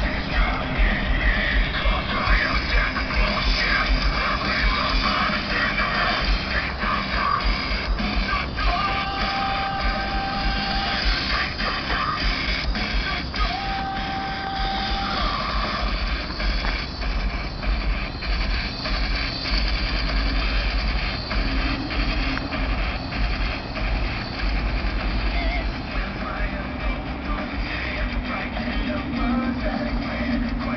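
Rock music playing loud on a pickup truck's aftermarket Alpine car stereo, with two 12-inch subwoofers and door and pillar speakers, heard from a distance, with heavy deep bass carrying strongly under the guitars and vocals.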